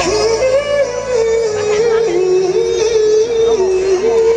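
Male soul singer's high falsetto holding long notes over a live band, stepping down in pitch and back up.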